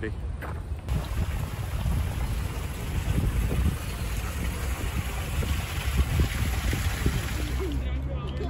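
Steady outdoor ambience: a deep, even rumble with a hiss above it, such as distant city traffic and wind, starting after a cut about a second in.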